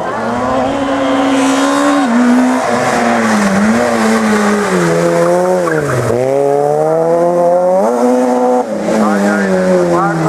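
Peugeot 106 rally car's four-cylinder engine revving hard, its pitch rising and stepping with gear changes. It drops to its lowest as the car slows for a hairpin about six seconds in, climbs steeply as the car accelerates out, then falls away near the end.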